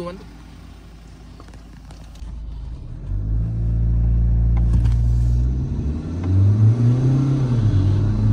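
Mahindra Scorpio N's engine heard from inside its cabin, accelerating hard from a standing drag-race launch with traction control off. Fairly quiet for about two seconds, then the engine note comes in loud and climbs in pitch, with short drops around the middle and near the end as it shifts up.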